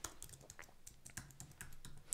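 Quick, faint typing on a computer keyboard: a rapid run of key clicks, about ten keystrokes in two seconds.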